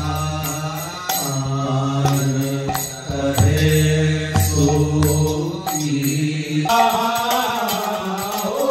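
Group of voices singing a Hindu devotional chant (kirtan) in unison over a steady low drone, with sharp percussion strikes about once a second.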